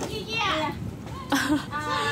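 Young children's voices and chatter, loudest in a short outburst about two-thirds of the way through, with a child's high drawn-out call starting near the end.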